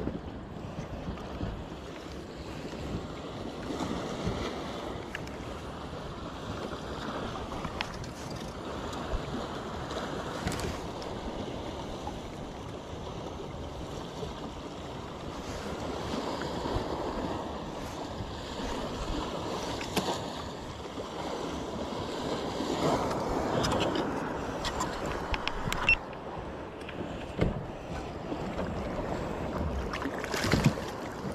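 Water lapping and splashing against a kayak hull, with wind buffeting the microphone, and a few scattered small knocks.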